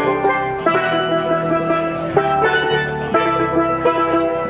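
Steel band playing a tune: several steel pans struck with mallets in a steady rhythm over drum kit and electric bass guitar, with cymbal strokes now and then.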